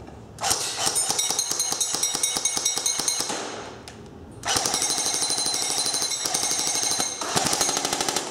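G&G Combat Machine RK-47 airsoft electric gun, running on a 9.6 volt battery, firing full-auto in three long bursts with short pauses between them. Each burst is a fast, even rattle of the gearbox cycling.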